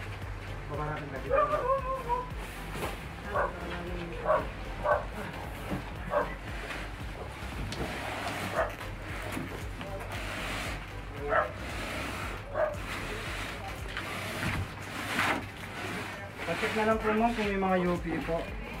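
A dog barking: a series of short single barks at irregular intervals, over a steady low hum and voices.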